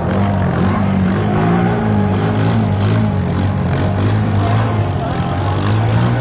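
ATV engine running under load as the quad ploughs through deep water, its pitch wavering up and down with the throttle, over the rush of water being pushed aside.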